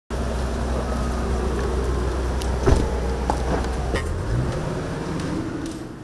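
A car's engine running, a steady low rumble whose pitch rises about four seconds in, with a few sharp clicks, the loudest near the middle; the sound fades towards the end.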